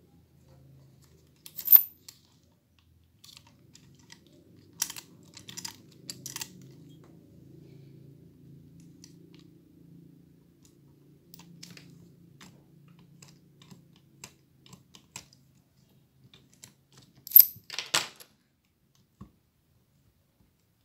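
A freshly reassembled VW Saveiro G6 tailgate handle being tested by hand: sharp clicks and snaps from its lock cylinder and lever mechanism as it is worked. The loudest clicks come about two seconds in and in a quick cluster near the end, with a few lighter clicks and soft handling noise between.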